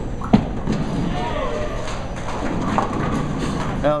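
A bowling ball landing on the lane with a sharp thud about a third of a second in, then rumbling as it rolls down the lane, with a crack of it striking the pins near three seconds in. Bowling-alley din and faint voices underneath.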